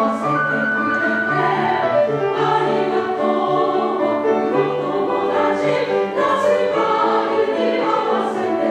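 Women's choir singing in parts with piano accompaniment, steady and sustained.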